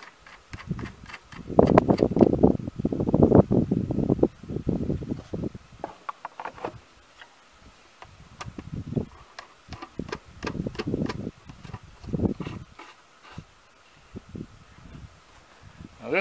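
Air filter and plastic cover being fitted back onto a riding mower's engine by hand: irregular knocks, clicks and rubbing, loudest in a cluster a couple of seconds in, then scattered clicks.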